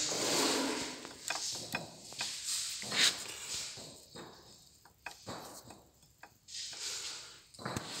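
Scattered light clicks and knocks of a bevel gear in an MTZ tractor transmission being rocked and handled by hand on its shaft, checking its bearings for play. The loudest knock comes about three seconds in.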